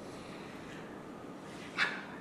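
Room tone in a lecture room: a steady, faint hiss in a gap between speakers, with one brief hissing sound a little before the end.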